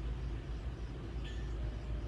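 Steady low background hum, faint, with no distinct event.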